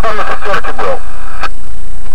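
A man's voice, loud and distorted, over a taxi two-way radio in a car, breaking off about a second in; a steady hum of several even tones and a short click fill the rest.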